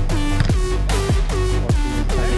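Background electronic dance music with a steady beat and repeated falling, sliding bass notes.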